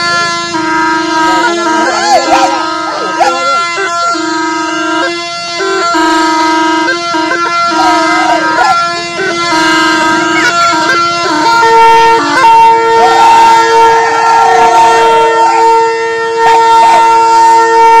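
A tarpa, the Warli tribal wind instrument made from a dried bottle gourd, played in a continuous nasal, drone-like melody. The phrases stop and start for the first part, then from about twelve seconds in the notes are held longer, with a second steady tone sounding beneath.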